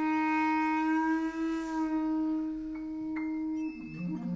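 Clarinet holding one long, steady note for about three and a half seconds, then moving down to lower notes near the end, in free improvisation.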